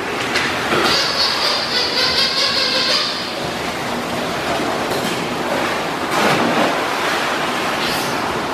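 Water splashing and sloshing in an indoor pool as a dog swims after a ball, heard as a steady wash with louder splashes a few seconds in. A high, wavering whine runs for about two seconds starting about a second in.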